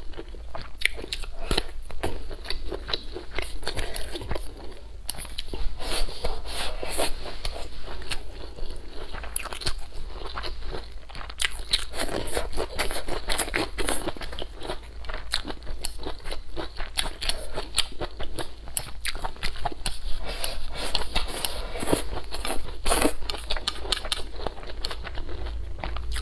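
Close-miked eating: biting and chewing whole long green chili peppers and fried pork ribs with rice, a continuous run of crunching bites and small crackling clicks.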